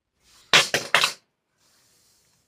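Handling noise from a phone being moved: three quick, loud rustling bumps about half a second in, then quiet.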